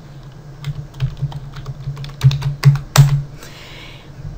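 Typing on a computer keyboard: an irregular run of key clicks that thins out about three seconds in.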